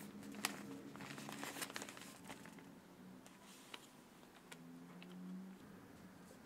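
Newspaper rustling and crinkling as it is handled and folded. The crinkling is busiest in the first couple of seconds, then thins to a few scattered crackles.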